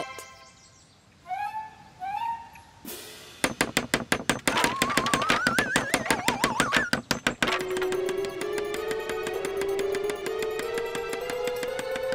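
Cartoon sound effects over music: two short rising blips, then a fast, even run of clicks with a wavering whistle climbing in pitch, then a steady tone slowly rising under rapid ticking as the tower grows.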